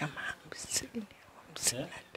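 A woman weeping, with broken sobbing breaths and faint whispered, choked words. Two sharp breathy intakes come a bit past the middle and near the end.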